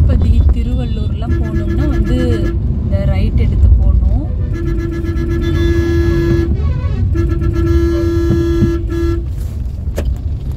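A vehicle horn sounds three long, steady blasts in heavy highway traffic, heard from inside a moving car over its steady road rumble.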